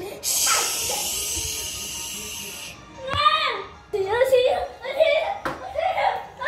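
A high hiss lasting about two and a half seconds that cuts off suddenly, followed by a child's high voice making short, sliding sounds without clear words.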